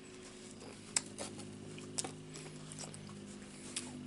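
Mouth-closed chewing of a wavy Pringles potato crisp: faint crunching with a few sharp little crackles, the clearest about one and two seconds in, over a steady low hum.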